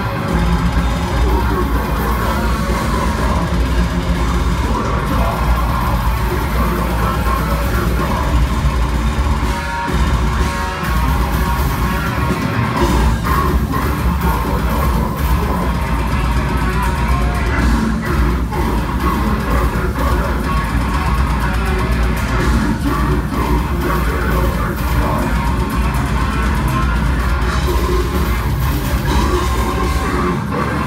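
A technical deathcore band playing live, loud and dense with distorted guitars and a drum kit, heard from within the crowd.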